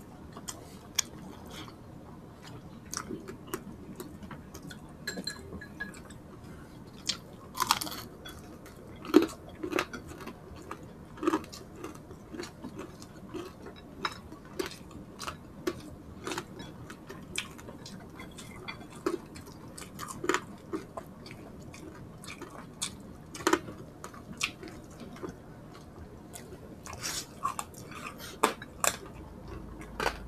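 Close-up chewing and crunching of crispy fried pork belly, a steady run of small crackling clicks and wet mouth sounds, with several louder crunches scattered through.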